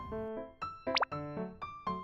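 Background music: a light tune of short, quick keyboard notes. About halfway through, a brief swooping sound effect slides up and back down in pitch.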